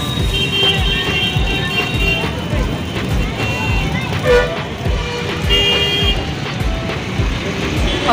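Roadside street noise: traffic with vehicle horns tooting, over music with a steady thumping beat and faint background voices.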